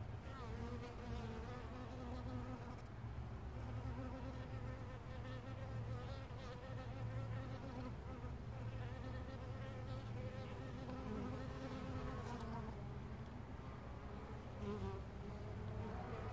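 Carniolan honey bees buzzing at the hive entrance, a hum of wingbeats that wavers slightly in pitch as bees fly close past.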